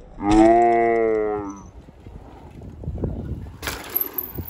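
A man's long, drawn-out cry of 'aaaai', held about a second and a half with the pitch falling slightly. Quieter rustling follows, then a short sharp knock near the end.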